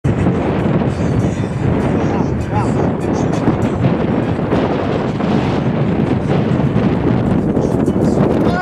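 Wind buffeting the camcorder's microphone: a loud, steady low rumble that covers everything else, with a faint distant voice about two and a half seconds in.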